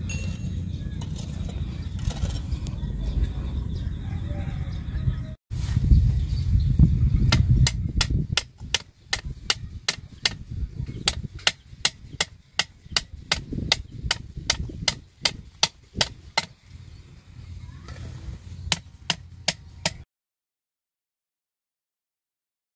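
Machete chopping at grass and low vegetation: a quick run of sharp, evenly spaced strikes, about two to three a second, lasting around nine seconds, then a few more strikes after a short pause. Before the chopping, a steady low rumble.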